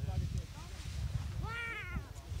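Low rumble of wind buffeting the microphone, with a short high-pitched call that rises and falls near the end.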